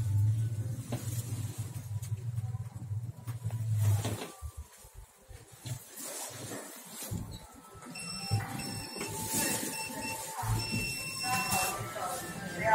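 Passenger elevator in motion: a steady low hum for about the first four seconds, then steady high electronic tones for the last few seconds as the car arrives and its doors open.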